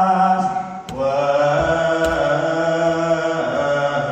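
Ethiopian Orthodox liturgical chant: voices hold long, drawn-out notes. There is a brief break and a change of pitch about a second in, then one long held note and another change of pitch near the end.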